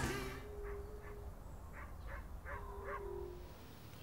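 Faint distant animal calls over quiet outdoor ambience: about six short, sharp calls spread through, and two longer steady low calls, one near the start and one about two and a half seconds in.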